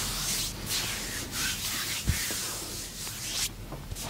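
Hands rubbing and stroking bare skin during a leg and foot massage: a run of swishing strokes about half a second apart that grow fainter after about three and a half seconds, with one short low thump about two seconds in.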